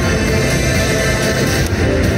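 Video slot machine's free-spin bonus music playing steadily and loudly as the last free spin of the feature resolves.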